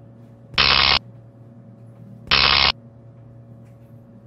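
Steady low electrical hum, broken twice by loud, short electric buzzes, each under half a second and about 1.7 seconds apart: the zap of Tesla-coil-style devices.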